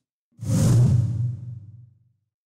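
Video-editing transition sound effect: a single whoosh starting about a third of a second in, with a low hum beneath it that fades out over about a second and a half.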